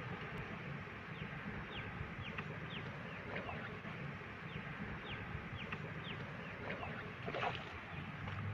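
Birds calling: a scattered series of short, falling chirps over steady outdoor background noise, with one louder call about seven and a half seconds in.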